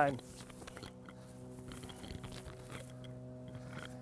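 Faint jingling and clinking of a mail shirt, with scattered small clicks, as the wearer swings a long-handled Danish axe two-handed and moves about, over a steady low hum.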